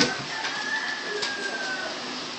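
A click, then a single thin, high whistle-like tone that holds for about a second and a half, rising slightly and then falling, over a steady background hiss.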